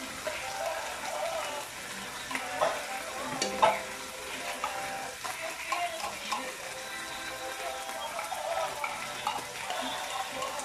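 Corned beef and sautéed vegetables sizzling in a wok over a gas flame, while a spoon scrapes the meat out of a tin can with sharp clinks of metal on the tin, the loudest about three and a half seconds in.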